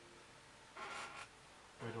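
A wide flat watercolour brush stroked across wet watercolour paper, giving one short papery swish about a second in.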